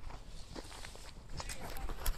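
Footsteps crunching on snow, a series of sharp crackling crunches that get louder and closer together in the second half, over a low rumble.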